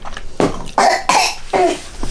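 A person coughing a few times in short bursts, close to the microphone.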